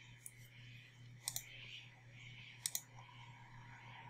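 Faint clicks of a computer mouse button: a single click, then two pairs of quick clicks about a second and a half apart.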